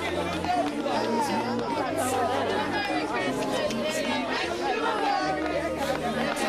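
Several people chattering at once, unclear overlapping voices, over a background music bed of held low chords that change every second or two.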